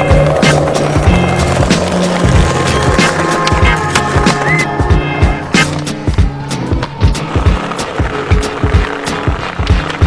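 Skateboard wheels rolling on concrete, with many sharp clacks of board pops and landings, over background music with a steady bass line.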